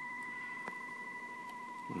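Steady test tone from the Super Star 360FM CB radio's speaker, the signal generator's test signal received on USB at S9. It is one unwavering tone with a fainter overtone above it, with a faint click about two-thirds of a second in.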